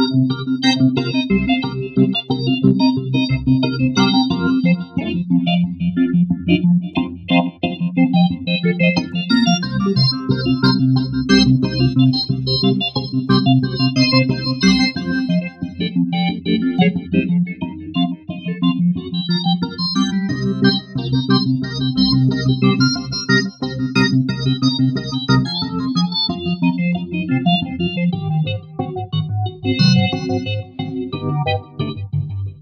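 A layered software-synth patch played live on a keyboard: the Morgan open-source organ holding sustained chords, with busy arpeggiated synth notes running above them. The chords change every few seconds.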